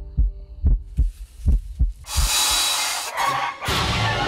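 Dramatic heartbeat-like sound effect, a run of low thumps over a faint held tone, giving way about halfway through to a loud rushing noise lasting about a second and a half.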